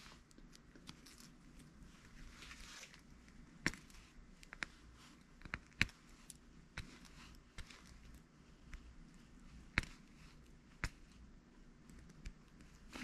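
Faint, scattered clicks and light taps from handling a metal electric dental high-speed handpiece and the bur in its chuck, about seven sharper clicks spread through the middle; the handpiece is not running.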